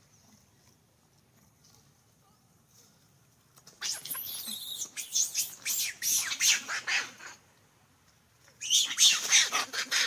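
Young long-tailed macaque screaming: rapid high-pitched squeals in two bouts of about three seconds each, the first starting about four seconds in.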